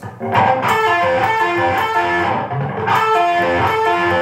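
Ibanez electric guitar playing a fast legato run of pull-offs high on the neck, a quick stream of distinct notes that fall in pitch in short, repeating groups.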